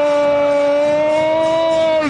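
A man's voice holding one long, high 'gol' shout on a steady pitch, rising slightly near the end: a radio commentator's drawn-out goal call.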